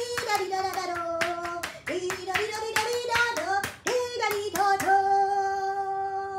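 A woman singing a series of long held notes, with hand claps in between; the longest note is held near the end.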